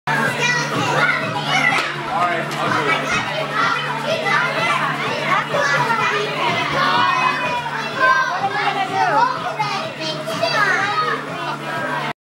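Many children's voices chattering and calling out at once, a steady babble of kids talking over one another, with a steady low hum underneath.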